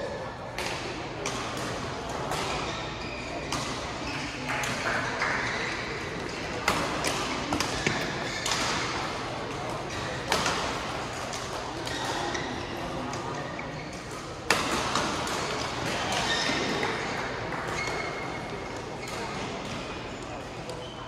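Badminton hall sound: rackets hitting shuttlecocks in sharp clicks across several courts, with short high shoe squeaks on the court mats over a steady murmur of crowd chatter; the sharpest hit comes about two-thirds of the way through.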